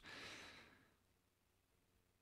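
Near silence: a faint breath out at the microphone fades away in the first half second, then nothing.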